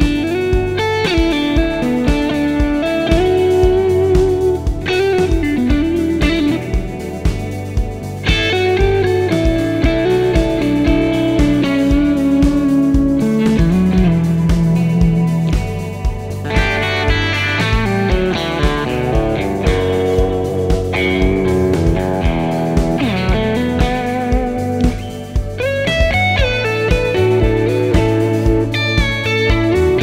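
Powers Electric A-Type electric guitar played solo through an amplifier: a continuous piece of picked single notes and chords, with some notes wavering and bending in pitch.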